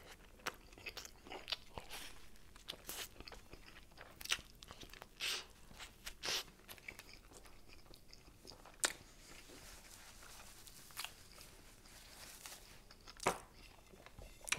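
Close-miked chewing of a mouthful of meatball sandwich on a toasted roll: irregular wet smacks and soft crunches, a few of them louder.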